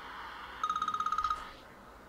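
Mobile phone ringtone played into the microphone: a rapid beeping trill of about ten pulses, lasting under a second, over a faint hiss. It is the ring of an incoming call.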